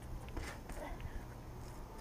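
Faint soft knocks and rustling as two children kick up into handstands against a brick wall on grass, over a low steady hum.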